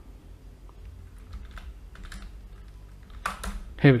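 Computer keyboard keystrokes: scattered, irregular taps as a line of code is typed, over a low steady hum. A man's voice starts near the end.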